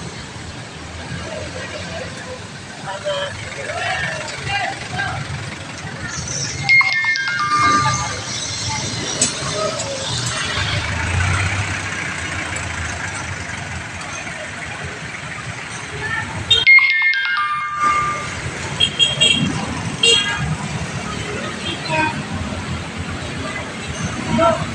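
Busy wet street traffic and voices heard from a moving pedicab, with music over it. Twice, about 7 s and 17 s in, a short falling run of tones stands out.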